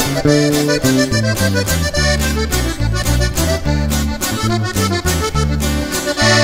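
Live norteño band playing an instrumental break in a corrido: button accordion carrying the melody over an alternating bass line and steady rhythm strokes, with no singing.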